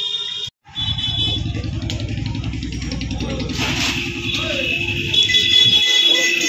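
A motor engine running steadily with a low, even pulse, with people talking in the background. The sound cuts out briefly about half a second in.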